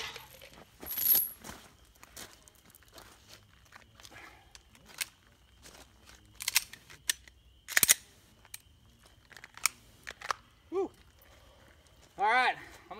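Irregular light clicks and clacks from pistol magazines and ammunition being handled and loaded, with a cluster of louder, sharper clacks about six to eight seconds in.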